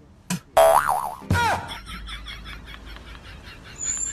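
Cartoon comedy sound effects: a wobbling boing about half a second in, then a second boing that slides down in pitch, followed by a fast, faint, even ticking.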